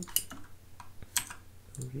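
Clicks and taps of a computer mouse and keyboard: two sharp clicks about a second apart, with lighter keystrokes between.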